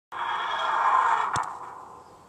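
A whooshing sound effect that starts suddenly and swells for about a second. A single sharp click cuts it about a second and a half in, and it then fades away.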